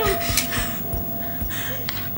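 Suspense film score, a steady held tone over a low pulsing beat, with a person's short gasping breaths.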